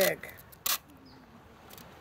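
A single short, sharp snap a little over half a second in, from a strip of adhesive tape being pulled and torn off its roll.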